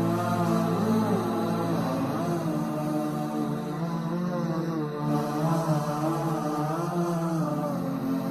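Background music: a slow, chant-like vocal melody with gliding pitch over steady held low tones.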